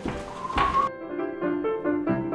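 A single dull thunk in a room, with a brief steady tone just after it. Then the room sound cuts off and piano music starts about a second in, playing a run of short notes.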